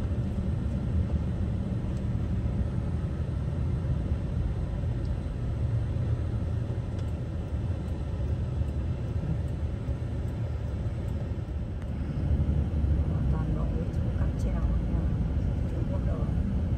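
Steady low road and engine rumble heard from inside a moving car's cabin, growing louder about three-quarters of the way through.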